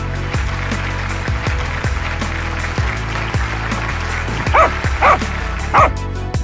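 A corgi barks three times in quick succession near the end, the barks standing out above background music with a steady beat.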